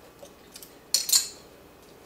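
Two quick, light metallic clinks about a quarter of a second apart near the middle, from loose metal shoe taps being handled and set down.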